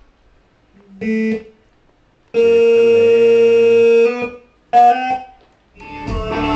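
Keyboard chords with gaps of silence between them: a short chord about a second in, a long held chord of about two seconds, then a brief chord near the end.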